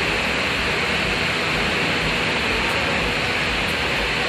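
A steady, even hiss of background noise with no distinct events in it.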